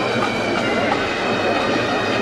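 Pipe band bagpipes playing a march: steady drones held under a moving chanter melody.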